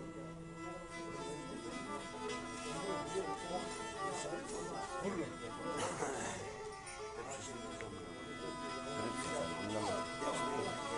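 Black Sea kemençe being played, a bowed melody of held and changing notes, with men's voices talking in the room behind it.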